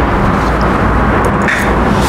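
Steady low rumbling background noise of a running machine, strongest in the deep bass, with no speech over it.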